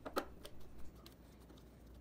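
Faint clicks of a T15 Torx driver turning a screw out of an espresso machine's housing, a few small ticks in the first second, then only faint room noise.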